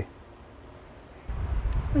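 Quiet outdoor background, then a little past halfway a low, uneven rumble of wind buffeting the microphone, with a man's voice starting at the very end.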